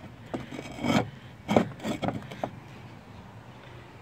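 Concrete roof tiles handled by hand, scraping and knocking against neighbouring tiles several times in the first two and a half seconds, the sharpest knock about a second and a half in.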